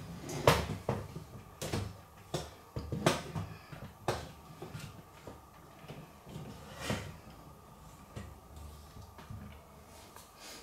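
Handling noise: a few irregular soft knocks and clicks, like hands or a handheld camera bumping a plastic enclosure, most of them in the first half, over a faint low hum.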